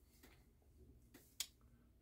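Near silence: room tone, broken by a single faint short click about two-thirds of the way through.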